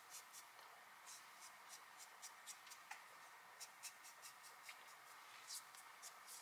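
Faint, short, scratchy strokes of a small eyebrow razor blade drawn across facial skin, about two or three a second and irregularly spaced, shaving off peach fuzz.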